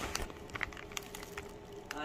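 Thin plastic fish bag full of water crinkling and crackling in irregular little clicks as it is handled.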